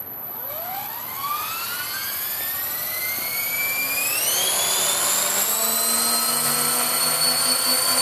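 Electric 450-size RC helicopter spooling up from a standstill: the motor whine and rotor noise start abruptly and rise in pitch for about five seconds, then hold steady at flying speed as it lifts off near the end.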